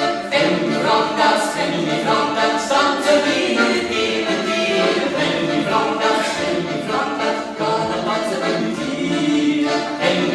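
A woman singing a folk song in Bavarian dialect, set to a traditional Macedonian tune, accompanied by a piano accordion.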